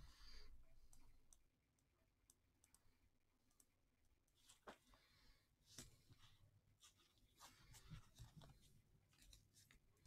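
Near silence: room tone with a few faint, scattered clicks and soft rustles.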